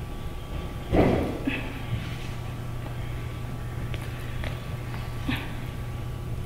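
A single dull thump about a second in, followed by a steady low hum and a few faint clicks.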